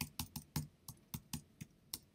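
Typing on a computer keyboard: a quick, uneven run of about eight key clicks as a word is keyed in.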